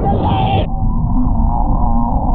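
Heavy wind rumble on the camera microphone during a wooden roller coaster ride, with riders' long drawn-out yells over it. About half a second in the sound turns suddenly duller as the high end drops out.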